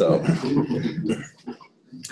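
A man's voice: a drawn-out "so" and hesitation sounds for about the first second, then a brief lull.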